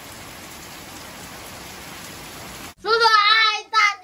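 Steady rain, an even hiss with no distinct drops or rhythm. About three seconds in it cuts off abruptly and a child's high voice begins speaking.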